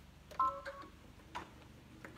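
A short electronic beep from a combination sewing and embroidery machine, starting with a click about half a second in, then a second click about a second later.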